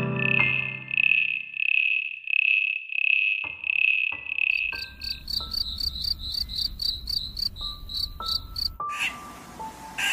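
Insect chirping: short high chirps about twice a second, giving way about five seconds in to a faster, higher chirping that stops about a second before the end.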